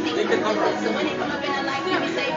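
Crowd chatter: many people talking at once in a large hall, no one voice standing out.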